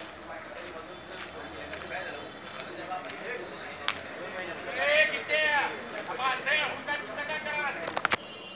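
Voices talking against a low outdoor background hum, with a few louder spoken phrases in the second half.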